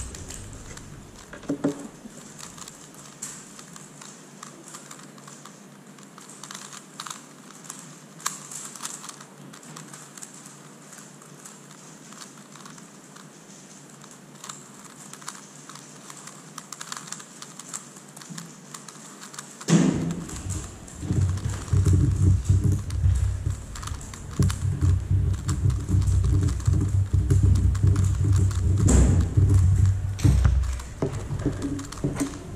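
Megaminx being turned by hand in a speed solve: rapid, irregular clicking and clacking of its plastic faces. About two-thirds of the way in, a loud low rumble comes in under the clicking and is louder than it.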